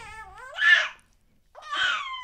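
A nine-week-old baby screaming in short, high-pitched cries: one trailing off at the start, a harsher one about half a second in, and another near the end after a brief pause.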